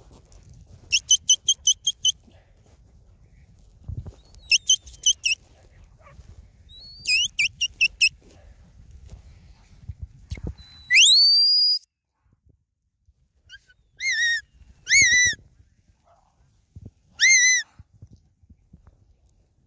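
Herding whistle signals to a stock dog working cattle: several quick runs of short high pips, then a long rising whistle about two thirds of the way through, and three shorter rise-and-fall notes near the end.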